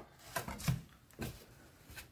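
A few faint, short knocks and rustles of kitchen handling: a kitchen knife is laid down on a wooden chopping board, and a square of chocolate-topped shortbread is picked up off a paper napkin.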